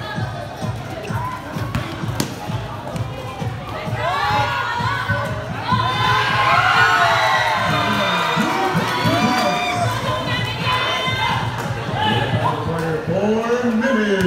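Basketball spectators shouting and cheering, many voices at once, swelling about four seconds in and loudest a little after the middle, with the thuds of a basketball bouncing on the court underneath.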